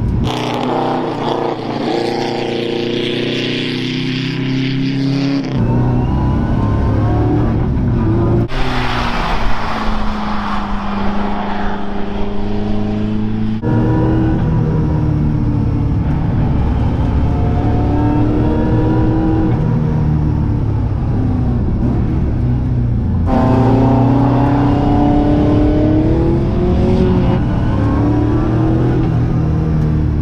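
Porsche 928's V8 engine under hard driving on a circuit, the revs climbing and dropping again and again through gear changes and corners. It is heard partly from inside the cabin and partly from outside the car, in several abruptly cut shots.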